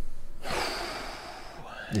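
A man's long, noisy breath right into a close microphone, lasting about a second and fading out.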